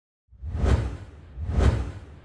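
Two whoosh sound effects from a logo intro, about a second apart, each swelling and falling away over a deep boom.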